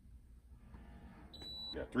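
A single short electronic beep, one steady high tone lasting under half a second about a second and a third in, from an electronic racket swing-weight machine signalling that its measurement is done. A man's voice reading the result follows at the very end.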